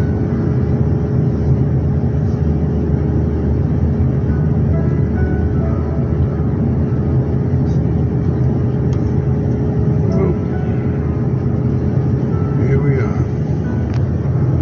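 Airliner cabin noise while taxiing: a loud, steady low drone from the jet engines and cabin air, with a steady hum running through it.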